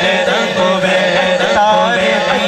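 A man singing a devotional Punjabi manqabat in praise of a Sufi pir into a microphone, in long ornamented lines with wavering held notes, over a steady low drone.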